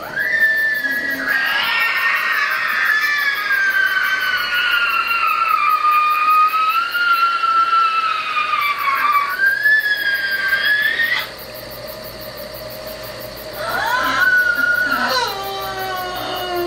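A woman's long, high-pitched squealing whine, held for about eleven seconds with slowly wavering pitch before it cuts off suddenly. A second whine follows near the end, rising and then dropping low: an exaggerated waking-up stretch noise.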